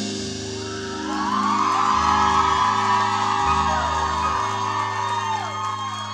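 A live rock band's last notes ringing out, with low bass and guitar notes held and shifting a few times, while the audience whoops and cheers over them.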